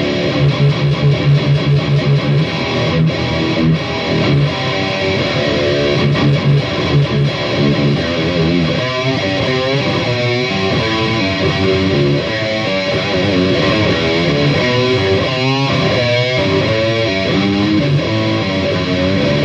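Washburn Les Paul-style Gold Top electric guitar being played solo: a riff of quick repeated low notes, then from about halfway through, lead lines with string bends and wide vibrato.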